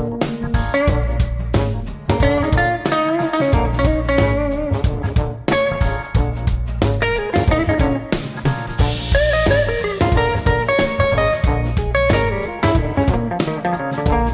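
Blues-rock band playing an instrumental passage: an electric guitar line with bent notes over bass and a drum kit.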